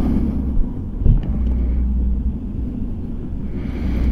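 Motorcycle engine idling, a steady low rumble, with wind buffeting the microphone; a single knock about a second in.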